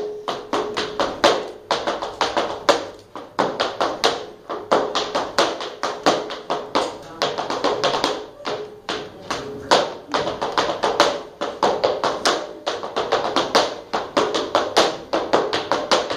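Flamenco footwork: the dancer's heeled shoes striking the stage in fast, rhythmic runs of loud stamps and taps, with acoustic guitar playing underneath.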